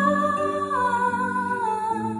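A woman's voice holding long, wordless notes over harp accompaniment; the vocal line steps down in pitch toward the end.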